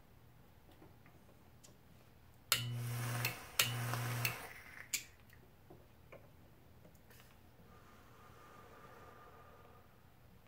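A homemade 120-volt AC e-cig firing twice, each burst under a second, as it is drawn on. A steady electrical buzz mixes with the hiss of the atomizer coil vaporising liquid, and each burst starts with a click from the relay switching. More sharp clicks follow a second or so after the second burst.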